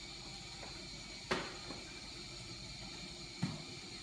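Quiet room tone with light knocks from a coiled power cord and its plug being handled and uncoiled: one sharper knock about a second in and a fainter one near the end.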